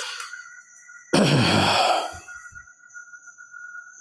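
A man's loud sigh, one long breathy exhale into a close microphone, about a second in.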